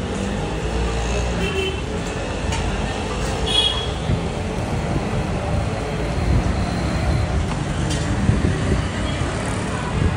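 Busy street ambience: a steady rumble of road traffic with indistinct voices in the background and a few light clicks.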